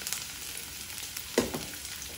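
Garlic cloves and onion pieces frying in a nonstick kadai, a steady gentle sizzle. There is one short sound about one and a half seconds in.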